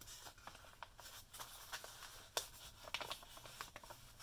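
Faint rustling and small ticks of heavy scrapbooking paper being folded and pressed closed by hand around a stuffed letter fold, with one sharper tick a little past halfway.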